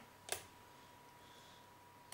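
One faint short click from a lock pick and tension tool working in the keyway of a Lockwood 334 padlock, about a third of a second in, over a faint steady high tone.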